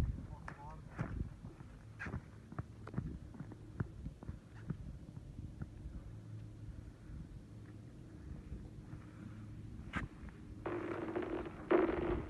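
Thick clear lake ice cracking under people walking on it: scattered sharp clicks and pings, with a louder crack near the end.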